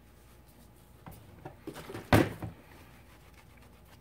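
Small handling noises on a workbench, with one loud, sudden clunk about two seconds in.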